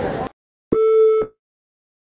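A man's speech breaks off, and about a second in comes a single half-second electronic beep, a steady pitch with a buzzy edge, part of a news channel's logo ident.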